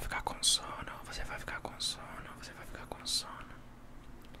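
A man whispering close to the microphone, with three sharp hissing sibilants spread across the few seconds.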